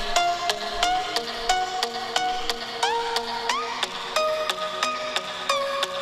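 Electronic dance music played through the Samsung Galaxy S10e's stereo speakers with Dolby Atmos switched off: a sharp beat about three times a second under a synth melody.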